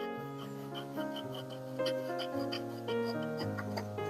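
Background music: a soft instrumental of held notes that change every half second or so, with light, regular ticks above them.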